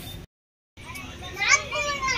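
The sound drops out completely for about half a second just after the start. Then, about a second and a half in, a young girl's high voice speaks with strong rises and falls in pitch.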